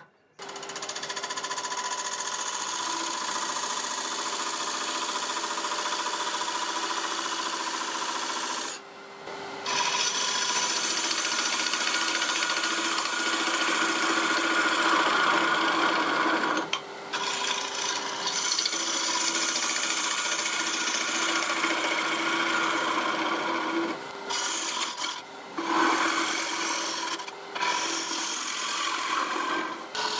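Hand-held lathe tool cutting into a spinning poplar blank on a wood lathe: a continuous rasping hiss of wood being cut over a steady hum. The cutting breaks off for almost a second about nine seconds in, and briefly several more times later on.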